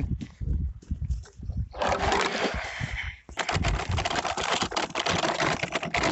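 A Kettcar (children's pedal go-kart) rattling and clicking fast and continuously as it is pedalled over bumpy grass and dirt, from about three seconds in. Before that come low thuds and a brief rush of noise.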